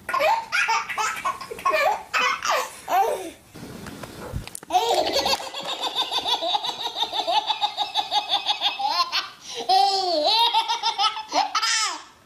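A baby laughing hard in quick bursts, a short break about four seconds in, then another baby's long run of fast, breathless belly laughs followed by shorter high laughs.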